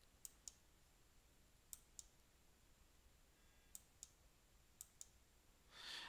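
Faint computer mouse button clicks over near silence: four pairs of quick clicks, the two in each pair about a quarter second apart, spread over several seconds.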